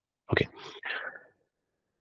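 A man says "okay" and lets out a short breathy exhale.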